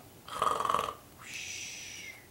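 A man's mock snore, imitating a sleeping storybook gorilla: a short rasping snore on the breath in, then a long hissing breath out.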